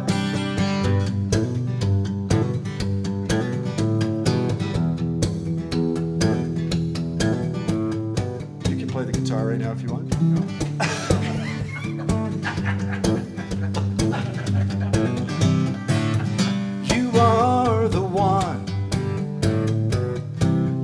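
Steel-string acoustic guitar strummed in a steady rhythm, an instrumental break between the verses of a live folk song.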